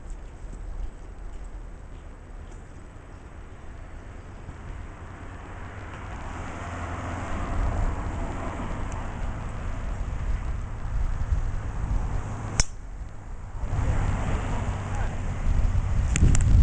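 Wind rumbling on the microphone, then a single sharp click about three-quarters of the way through: a golf club striking the ball off the tee.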